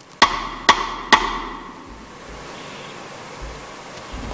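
Three knocks on a metal saucepan worn on a performer's head, about half a second apart, each ringing briefly.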